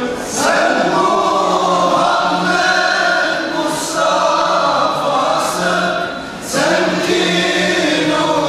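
Male choir singing a Turkish ilahi (Islamic devotional hymn), in three long held phrases with brief breaks between them.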